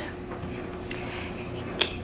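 Quiet room tone with a faint tick about a second in and a single sharp click near the end.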